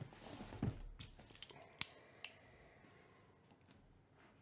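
Hands handling and turning a cardboard shipping case on a table: a scraping, rustling noise in the first second, then two sharp clicks about half a second apart.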